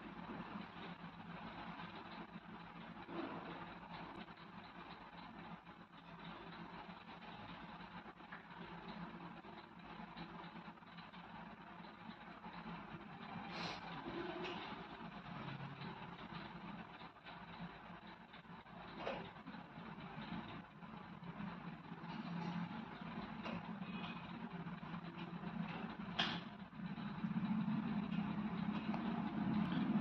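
Faint steady background noise, a low hiss and hum, with a few brief soft clicks scattered through it.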